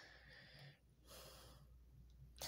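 Near silence: a woman's faint breaths, two soft ones, in a pause between spoken phrases.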